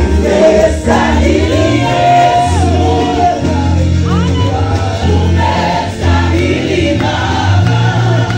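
Loud gospel praise music: many voices singing together over an amplified band with a heavy, steady bass line.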